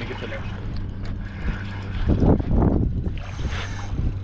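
Indistinct voices about two seconds in, over wind and water noise and a steady low hum.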